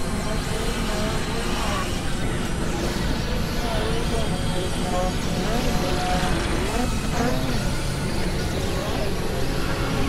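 Layered experimental synthesizer noise music: a dense, steady wash of noise and low drone, with short gliding pitched tones sliding up and down through it.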